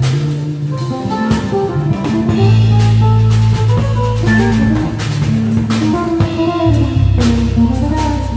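Jazz trio playing live: a guitar plays a melodic line over sustained bass notes and a drum kit with cymbals.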